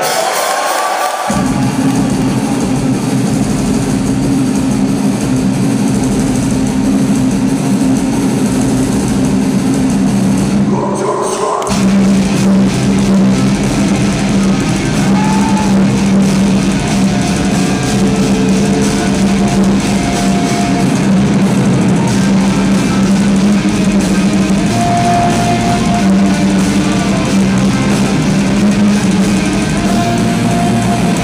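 Heavy metal band playing live in a concert hall, with distorted guitars and drum kit. The full band comes in about a second in, drops out briefly around ten seconds in, and then crashes back in.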